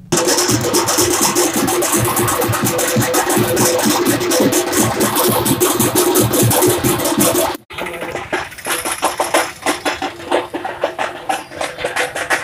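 Street procession drum band playing a fast, steady rhythm on a large bass drum and side drums, with a steady tone running beneath the beats. The sound cuts out briefly about seven and a half seconds in, then the drumming resumes.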